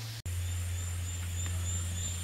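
Outdoor forest ambience: a steady low rumble with a thin, high, steady whine above it. It cuts out for an instant about a fifth of a second in.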